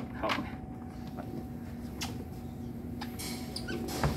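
A few light clicks and knocks as a stainless-steel insulated tea urn is lifted and handled, with a short rustle or scrape a little after three seconds, over a steady low electrical hum.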